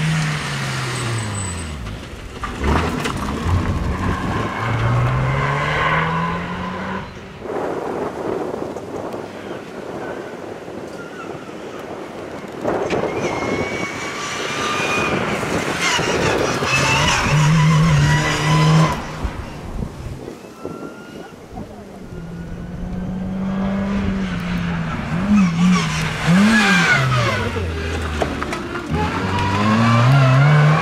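Two Nissan March Nismo K13 rally cars passing one after the other, their engines revving up and down through the gears. The first fades away in the first few seconds. The second climbs in pitch through several gears in the middle and blips its revs up and down near the end.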